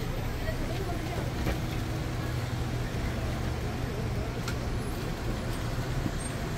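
Busy street-side ambience: a steady low rumble and hum with indistinct voices in the background.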